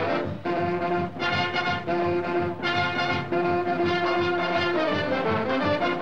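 1940s big band swing music: trumpets, trombones and saxophones play together in short phrases, then hold a long chord through the middle.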